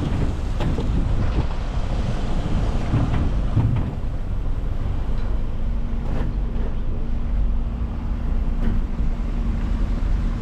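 Motorhome engine running at low speed, heard from the cab, as it creeps down a slipway and onto a car ferry, with a few short knocks along the way. From about halfway a steady low hum of fixed pitch sets in under the rumble.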